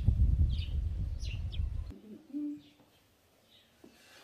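Small birds chirping repeatedly over a low outdoor rumble, which cuts off suddenly just before two seconds in. Just after that comes a single short low coo, then only faint chirps.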